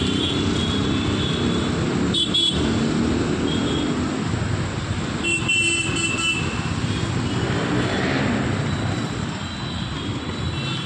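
Road traffic with vehicle engines running steadily. Short horn toots come about two seconds in, and a run of quick horn beeps comes around the middle.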